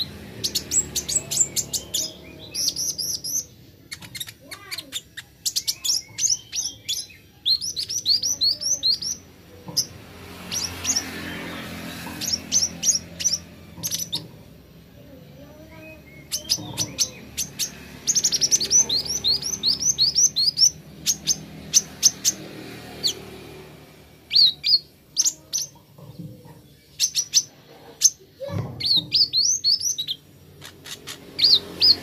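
Sunbird of the kind sold in Indonesia as 'kolibri ninja' singing in rapid runs of thin, high chirps, several a second, broken by short pauses, with faint voices underneath.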